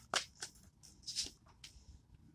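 A tarot deck being shuffled by hand: a few irregular papery swishes and slaps of cards, fading out toward the end.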